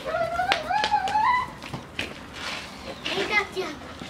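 A young child's high-pitched voice: one long call rising in pitch over the first second and a half, then shorter calls about three seconds in, with a few light knocks in between.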